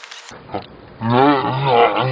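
A man roaring loudly with a wavering pitch, starting about a second in.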